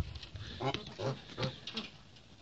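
Domestic geese giving about four short, low calls in quick succession.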